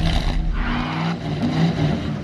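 Logo-intro sound effect of a car engine revving, loud and dense with a wavering engine pitch throughout.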